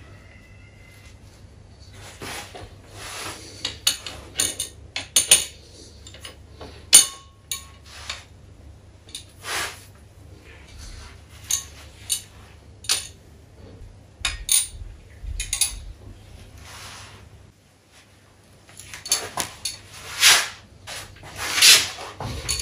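Irregular metallic clicks and clinks of a socket wrench and extension working on steel cylinder-head bolts as they are tightened by angle on a freshly gasketed head. The clinks are loudest near the end.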